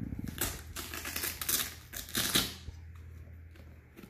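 Velcro (hook-and-loop) ankle strap on a Nike Air Griffey Max 1 sneaker being pulled open, a crackling rip in a few pulls over about two and a half seconds.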